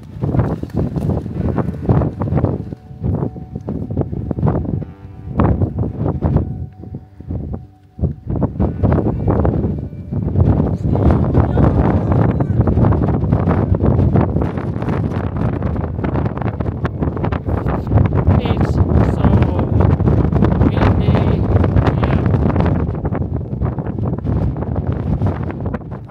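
Strong wind buffeting the microphone, coming in uneven gusts for the first ten seconds or so, then blowing loud and steady.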